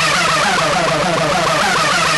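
Electronic dance music in a breakdown without the kick drum: a fast, repeating synthesizer figure of short rising glides over a held low note, with a noise sweep climbing in pitch.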